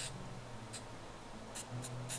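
Aerosol spray-paint can being tapped in short hissing puffs, about four in two seconds, over a faint low hum.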